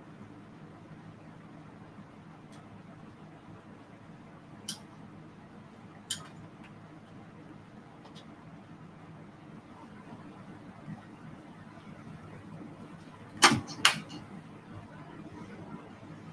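Low steady hum with a few faint clicks, then two sharper knocks a little under a second apart near the end: handling noise from a phone being worked on a desk.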